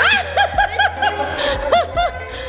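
High-pitched laughter: a quick run of short 'ha' syllables, about five in the first second, then one more near the end.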